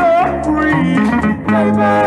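1964 doo-wop vocal group record: male group harmony singing over guitar and bass, with a sliding sung note at the start and held notes near the end.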